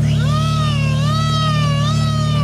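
A long, wavering, high-pitched squeal from a person's voice, lasting about two and a half seconds and rising and dipping in pitch, over the steady idle of a Porsche 911 Carrera (992) twin-turbo flat-six.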